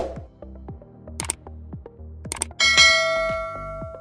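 Subscribe-button animation sound effects over background music: a sharp hit at the start, two clicks a little over a second apart, then a bell ringing out loudly and fading over about a second and a half.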